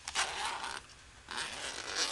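Zipper on a zippered knife case being pulled open in two strokes, the first just after the start and the second from about a second and a half in.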